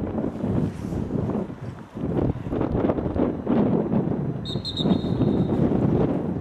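Wind buffeting the microphone throughout, and about four and a half seconds in, a referee's whistle blown once for about a second, the signal that starts the lacrosse faceoff.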